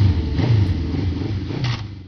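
A vehicle engine running and revving unevenly, fading out near the end.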